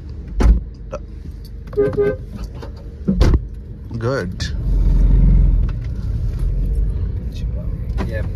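Car running, heard from inside the cabin as a steady low engine and road hum that swells into a louder rumble for about a second around five seconds in. Two sharp knocks cut through, one about half a second in and one about three seconds in.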